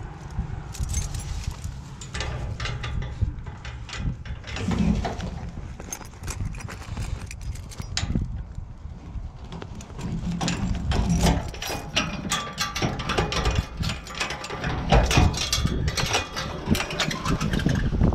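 Keys jangling and a padlock and chain rattling and clicking against the metal post of a chain-link gate as it is unlocked and opened. Scattered clicks and knocks come over a steady low rumble.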